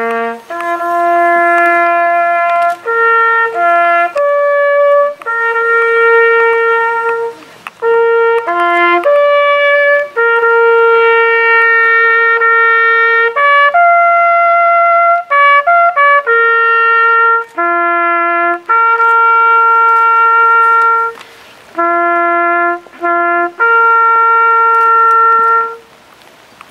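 Solo trumpet played by a military trumpeter: a slow ceremonial call of long held notes on a few repeated pitches, separated by short breaks. It stops just before the end.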